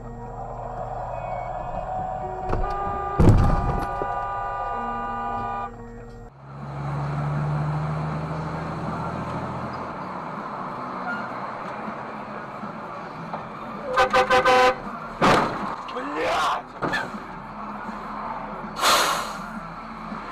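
In-car dashcam audio: music over engine and road noise with one loud knock about three seconds in, then after a cut, steady road noise with a quick series of car-horn toots about two-thirds through and a few sharp knocks after.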